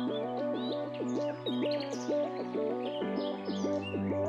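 Background electronic music: a fast repeating synth arpeggio over a held bass note that drops lower about three seconds in, with bird chirps over the top.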